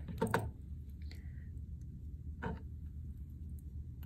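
Low steady room hum with a few soft handling sounds of two pairs of chain-nose pliers being picked up, the clearest a short brushing click about two and a half seconds in.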